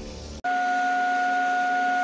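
A steady, unchanging electronic tone begins abruptly about half a second in, right after intro music cuts off, and holds at one pitch.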